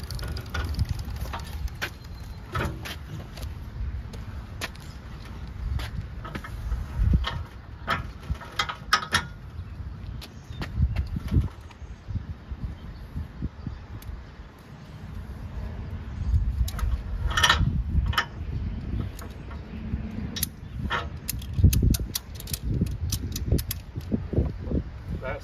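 Wind buffeting the microphone, with scattered metallic clanks and rattles as a dirt bike is pushed up the ramp of a Mototote M3 hitch carrier and settles into its wheel chock. The sharpest clanks come in clusters, about a third of the way in, around two-thirds of the way in, and near the end.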